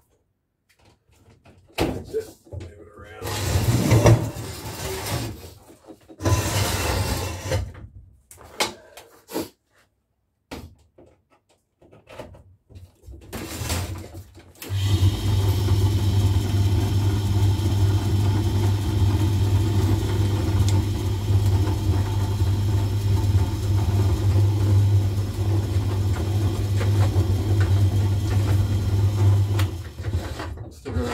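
A salvaged clothes-dryer motor runs the homemade lathe's headstock through a V-belt, giving a loud, steady electric hum that starts abruptly about halfway through and cuts off just before the end. It is preceded by several seconds of scattered handling noises and knocks.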